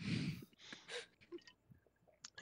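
A man breathing out sharply through nose or mouth, then two short, fainter breaths, with a faint tick or two; he has a head cold.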